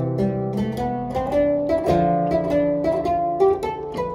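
Harpsichord playing a slow polyphonic piece, several voices at once: low notes held beneath upper notes that change every fraction of a second, each note with a plucked attack.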